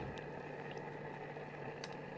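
Portable gas cassette stove's burner running steadily under a pot of simmering hotpot broth, a low even hiss and hum, with a couple of faint clicks.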